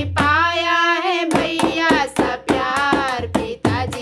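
A woman singing a sohar folk song, holding one long note for about the first second, then carrying on with the melody over a hand-drum beat.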